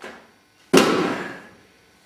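A softer knock at the start, then a loud slam about three-quarters of a second in that dies away over most of a second, as a bowl-shaped object is banged down onto a stage ledge.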